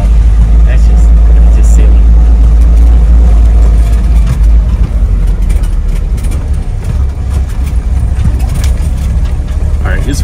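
Vintage 4x4 driving slowly along a gravel trail: a steady low engine and road rumble, a little louder for the first four seconds or so.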